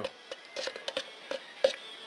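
A brush stirring thick seam sealer in an open metal can: soft scraping with scattered light clicks and taps against the can.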